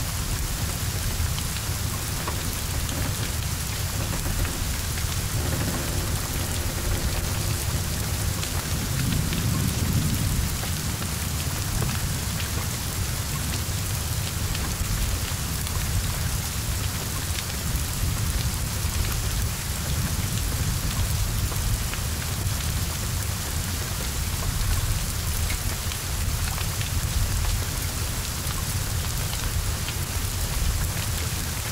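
Heavy rain falling steadily. A low rumble runs underneath and swells briefly about nine seconds in.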